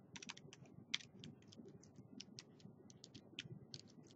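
Faint typing on a computer keyboard: quick, irregular keystrokes, with one sharper key strike about a second in.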